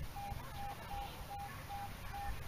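Metal detector beeping: a short mid-pitched electronic tone repeating evenly, about three times a second, signalling a buried target that reads as a zinc penny.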